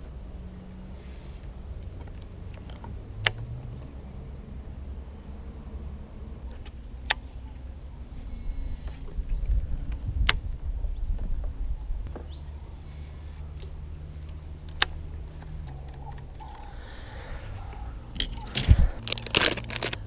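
Fishing tackle being handled on a boat over a low steady hum: a few sharp single clicks several seconds apart, then near the end a quick burst of plastic clatter as a tackle box is opened and soft-plastic bait packs are handled.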